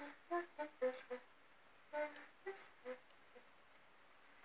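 Faint melody of short pitched notes, the tail end of a recorded home-made song played back through computer speakers, thinning out and stopping about three seconds in.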